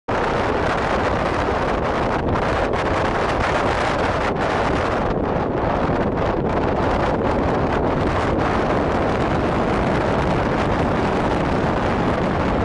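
Steady road and wind noise of a moving car, a dense, even roar with no let-up.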